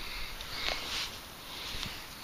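A person sniffing close to the microphone: a couple of short, soft sniffs in the first second, then quiet breathing.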